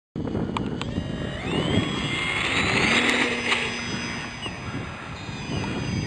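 Radio-controlled P-47 Thunderbolt model plane's motor and propeller winding up for takeoff: a whine that rises in pitch over the first few seconds, loudest about halfway through, then fading as the plane climbs away.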